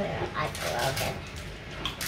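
Small plastic clicks and handling noise from a mirrorless camera as an SD card is pushed into its card slot, under a faint, wordless voice.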